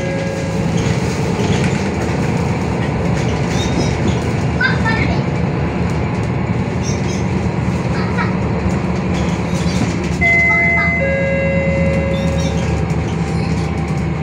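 Interior of a MAN NL323F city bus under way: its MAN D2066 diesel engine and drivetrain run with a steady low drone over road noise and cabin rattles. A set of steady high tones sounds for a couple of seconds near the end.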